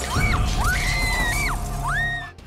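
A woman screaming in about four short, high-pitched cries, each rising and falling, with glass crunching and breaking beneath her. Tense dramatic music with a steady held tone plays underneath.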